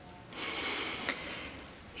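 A woman's audible breath between halting sentences: a soft rush of air, lasting under a second, starting about a third of a second in.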